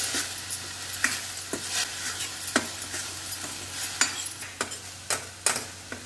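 Chopped banana flower sizzling as it fries in a stainless-steel kadai while a steel spoon stirs it. The spoon scrapes and taps against the pan at irregular moments, about once a second, over a steady sizzle.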